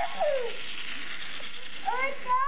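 A young child's high, gliding vocal squeals: one sliding down in the first half second, another rising and falling near the end, over a steady hiss.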